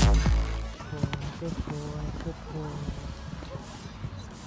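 Electronic dance music with a heavy beat cuts off abruptly just under a second in. The music gives way to the open-air sound of a showjumping arena: faint distant speech over a public-address system and a low crowd murmur.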